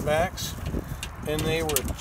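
Speech: two short stretches of a voice talking, with a few light clicks in between and a steady low rumble underneath.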